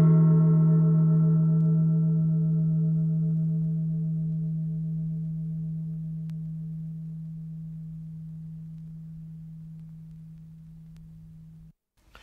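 The long, slowly fading ring of a single struck bell-like metal tone: a strong low hum under higher overtones that die away first. It is cut off abruptly near the end.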